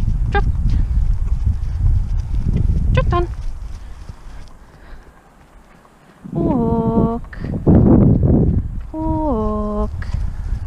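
A pony trotting on grass on a lunge line, its hooves thudding on the turf. In the second half the handler gives two long, drawn-out voice commands that fall in pitch.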